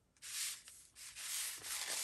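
Sheets of paper sliding and rubbing against each other and the cutting mat as a stack of journal pages is gathered up, in two brushing sweeps about a second apart.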